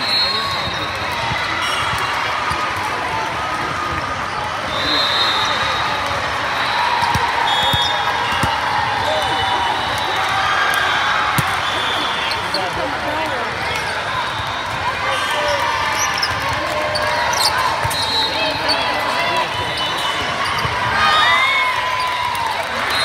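Busy hall during indoor volleyball play: a steady babble of many voices, with short referee whistle blasts from around the courts and sharp smacks of volleyballs being hit, with the loudest smack about halfway through.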